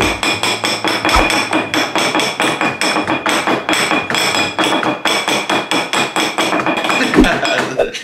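Fast, steady, rhythmic tapping of utensils whisking icing in plastic cups, several strokes a second, like drumming.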